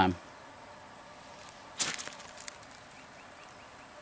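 A steady, high-pitched insect drone in woodland, with one sharp knock about two seconds in.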